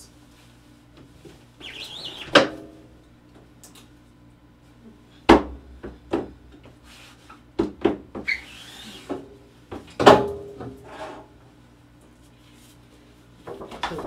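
Hand screen printing: a squeegee scraping across the inked screen, then the hinged screen frame being lifted and knocking on the wooden press table. Several sharp knocks stand out as the loudest sounds, about two, five and ten seconds in, with a short rasping hiss in between.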